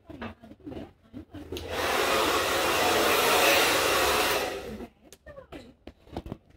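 A steady rush of blown air, about three seconds long, starting a couple of seconds in and stopping before the end, with light rustling around it.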